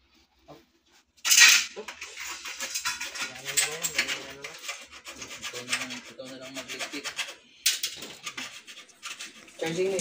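Rubbing and scraping noises that start suddenly about a second in, uneven and rasping, with a second harsh stretch near the eight-second mark.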